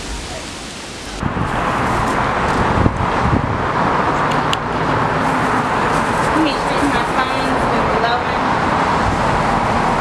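Steady city traffic noise that sets in suddenly about a second in, with faint voices talking under it.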